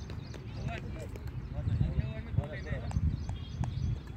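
Unclear voices of people talking at a distance, over a steady low rumble, with a few sharp clicks.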